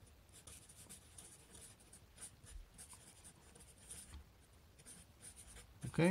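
Felt-tip Sharpie permanent marker writing on a white board: a quick run of short, faint, high-pitched strokes as words are written out.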